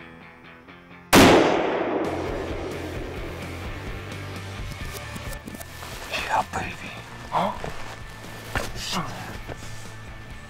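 A single rifle shot from a Savage rifle about a second in, its report echoing away over the next few seconds.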